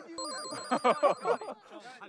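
An electronic trilling sound effect like a telephone ring, a fast two-note warble lasting a little over a second, over people talking and laughing.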